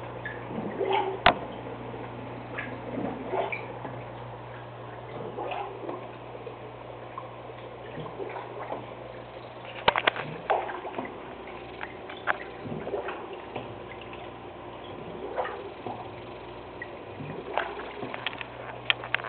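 Aquarium water trickling and gurgling over a steady low hum, with scattered small ticks. Sharp knocks come about a second in and again around ten seconds in.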